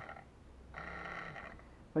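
A man's voice making drawn-out, level-pitched hesitation sounds, like a held "uhh" or "mmm": a short one at the start and a longer one of about a second in the middle.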